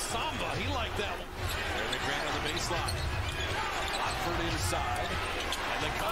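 A basketball being dribbled on a hardwood court, heard as repeated low thuds over the steady noise of an arena, with a commentator talking faintly.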